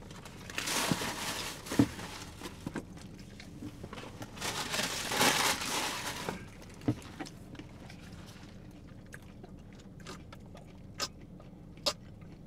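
Crunching bites into a hard nacho-cheese taco shell and chewing: two long stretches of crunching, about half a second in and about four seconds in, then quieter chewing with a few sharp clicks.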